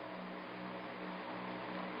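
Steady background hiss of an old speech recording, with a faint low hum underneath.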